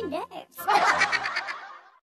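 A woman's voice: a brief spoken bit, then a drawn-out, strained laughing outburst of about a second that fades away near the end.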